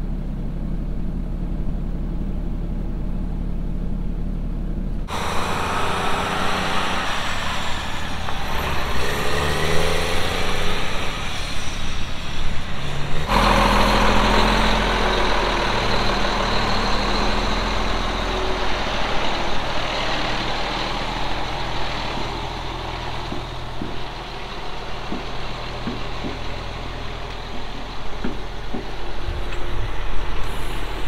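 Heavy diesel engine noise across a few hard cuts. First comes a steady low hum from inside a pickup's cab. Then comes louder outdoor engine running with some rising and falling revs, and after the second cut a steady engine sound with scattered clicks near the end.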